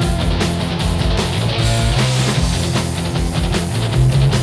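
Loud rock band music with electric guitar, bass and a steady drum beat, in a stretch without singing.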